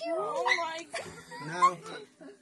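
Excited, high-pitched voices of children and adults exclaiming over one another.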